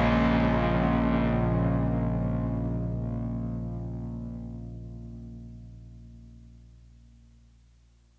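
The final distorted electric guitar chord of a punk-rock song ringing out and slowly fading, dying away to silence near the end.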